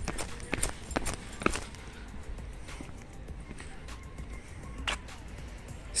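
Footsteps on pavement picked up by a hand-held phone's microphone over steady outdoor background noise: about two steps a second at first, then fewer and sparser.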